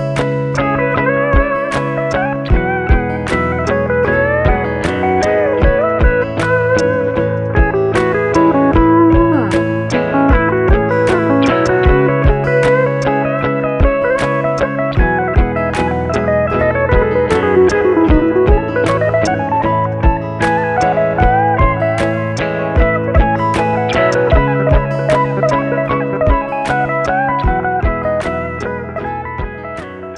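Fender Acoustasonic Stratocaster playing a lead solo, with bent and sliding notes, over a looped guitar backing of sustained chords and a bass line with a steady percussive beat. The music fades out near the end.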